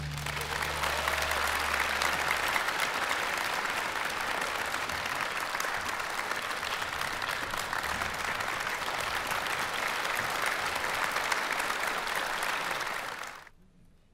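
Concert hall audience applauding at the end of an orchestral piece, a steady clapping that stops abruptly near the end. In the first two seconds a low note from the orchestra dies away under the clapping.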